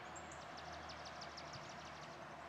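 Quiet outdoor background with a faint, rapid run of high, evenly spaced ticks, about seven a second for most of two seconds: a small animal calling.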